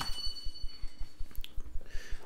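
A short, high computer chime: a click and then a bright ding that rings out and fades within about a second, as a chat message is sent. A faint click follows about a second and a half in.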